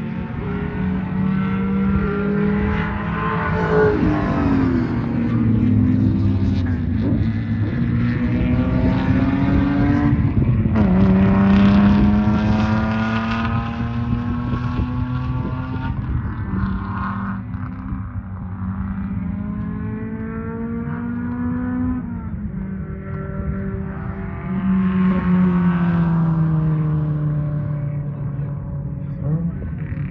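Race car engines accelerating hard around the circuit, more than one at once. Their pitch climbs and drops back at each gear change, several times over.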